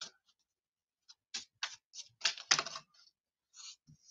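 Computer keyboard typing: a quick run of keystrokes from about one to three seconds in, with a few more clicks near the end.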